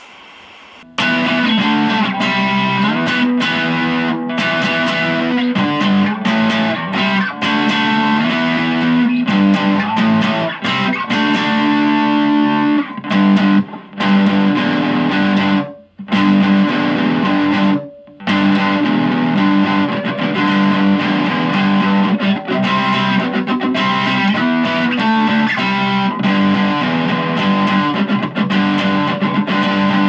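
Electric guitar played through a Boss Katana Mini practice amp on its distorted brown channel, a growling riff of chords and notes that starts about a second in and has two short breaks around the middle.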